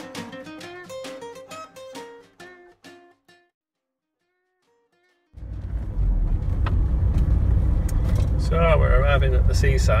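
A strummed guitar song fades out over the first three seconds, then cuts to silence. About five seconds in, the steady low rumble of a car's cabin noise starts while driving, with a voice briefly near the end.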